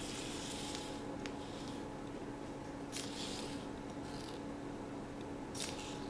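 Sphero Mini robot ball in a paper-box cover rolling across a paper map under remote control: soft scraping and rustling that comes and goes in short patches, over a faint steady hum.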